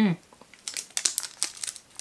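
Foil wrapper of a chocolate bar crinkling in the hand, a quick run of sharp crackles in the second half. A short, falling hum from a person opens it.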